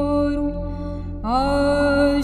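Orthodox liturgical chant: a single voice holding a long note over a steady low drone. About a second in the note fades and a new one slides up into place.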